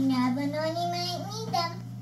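A young girl's voice in a drawn-out, sing-song line that stops shortly before the end, over a steady low hum.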